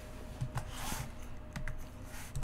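Computer keyboard typing: a few separate key presses at an uneven pace.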